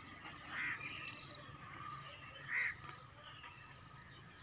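Two short bird calls about two seconds apart, faint against a quiet outdoor background.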